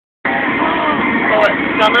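Steady vehicle running noise with people's voices over it, starting abruptly a quarter second in.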